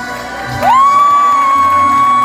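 A woman singing into a microphone through the venue's sound system slides up into one long, high held note over a backing track.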